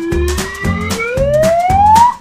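A whistle-like cartoon sound effect sliding steadily upward in pitch for about two seconds, over background music with a steady beat.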